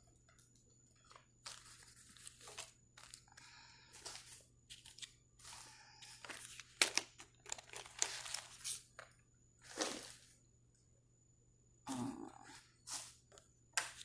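Faint, irregular rustling and crackling handling noises close to the microphone, in short scattered bursts with brief gaps.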